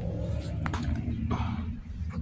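Low steady rumble of wind and handling noise on a phone's microphone as the phone is swung around, with a faint brief murmur about a second and a half in.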